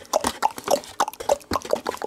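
Cardboard display box being handled and folded open by hand close to the microphone: a quick, irregular run of short clicks and pops.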